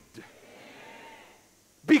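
A faint, brief murmur of congregation voices during a pause in a sermon. The preacher's amplified voice starts speaking again near the end.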